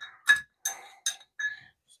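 Metal bar spoon stirring an old fashioned over a large ice cube in a rocks glass: about four light clinks of spoon against glass and ice, each with a short ringing note.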